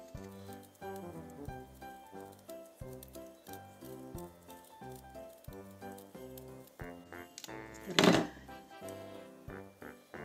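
Background music: a light instrumental tune with evenly spaced notes and a steady beat. A brief loud swish about eight seconds in.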